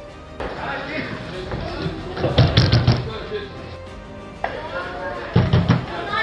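Voices over background music, with two clusters of loud thuds, the first about two seconds in and the second near the end.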